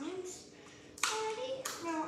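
A child singing wordless held notes, with a sharp hand clap about a second in and another shortly after.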